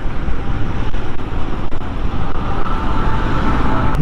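Royal Enfield Classic 350's single-cylinder engine running at a steady highway cruise, mixed with a heavy, steady rush of wind and road noise on the bike-mounted microphone.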